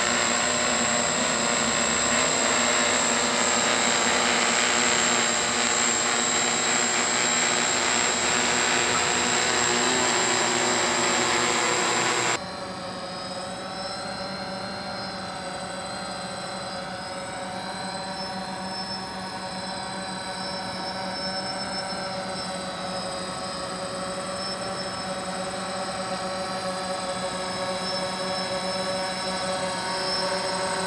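Electric quadcopter motors and propellers buzzing steadily as a DJI F450 quadcopter hovers. About twelve seconds in, the sound cuts abruptly to the quieter whine of a DJI Phantom quadcopter in flight, its pitch wavering gently.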